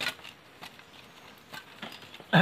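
Light wooden clicks and knocks of thin dry bamboo sticks being handled for fire kindling: a sharper click right at the start, then a few faint ones.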